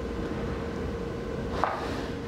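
Room tone: a steady low hum with a faint constant tone, and one light tap about one and a half seconds in.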